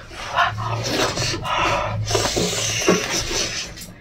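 Close-miked wet chewing and sucking of soft, fatty stewed pork, with frequent smacking mouth clicks.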